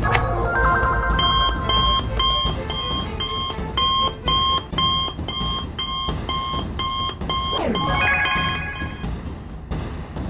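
Cartoon call-alert sound effect: an electronic ringing of short beeps repeating about twice a second, signalling an incoming call, over background music. A falling swoop sounds near the end.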